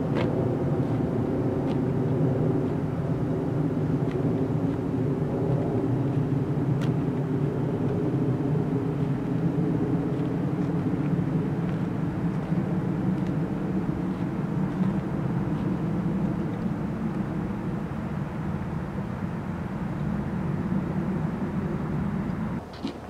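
Steady, low engine drone with several even tones, like a motor vehicle running nearby, easing off slightly toward the end.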